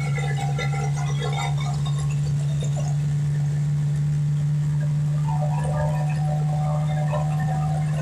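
Music with one long held low note under light chiming, mallet-like notes that come and go.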